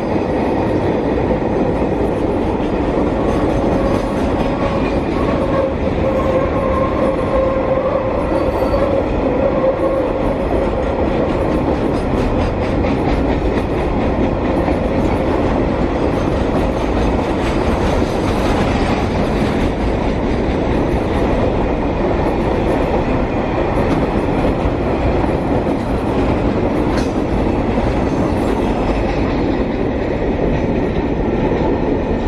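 Freight train's container wagons rolling past close by: a steady loud rumble and clatter of steel wheels on the rails. A wheel squeal sounds as a held tone from about three to ten seconds in.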